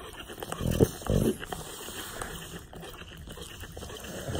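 English bulldog making two short, low grunts close to the microphone about a second in.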